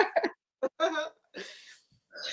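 A woman laughing: a few short, hiccup-like bursts, then a breathy exhale about halfway through.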